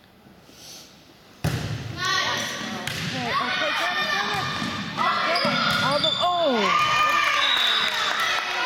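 Volleyball being struck in a gym, a sharp hit about a second and a half in. Then overlapping shouts and calls from players and spectators through the rally, with further ball contacts.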